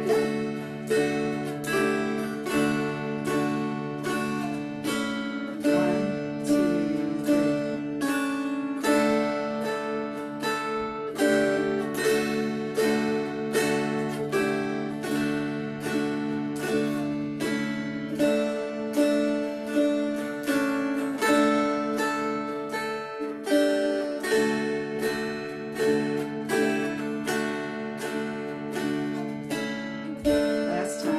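Two mountain dulcimers playing a slow, gentle round together. Evenly paced plucked and strummed melody notes ring over sustained low drone strings.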